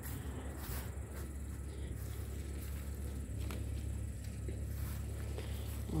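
Footsteps and rustling through grass and garden plants, faint, over a steady low rumble.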